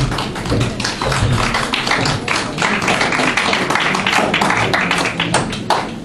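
A room of people applauding: a dense, steady patter of hand claps.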